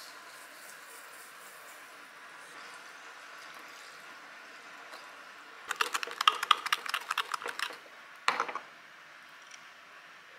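A metal spoon stirring thick chili sauce in a glass mug: about two seconds of rapid clicking and scraping against the glass past the middle, then one short scrape a moment later. Faint light ticking near the start as sesame seeds are shaken in from a shaker.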